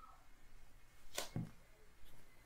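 Faint room tone broken by one brief, sharp noise a little over a second in.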